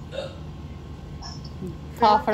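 A person's brief vocal sound, a short hiccup-like utterance just after the start, then a few faint small sounds over a low steady hum.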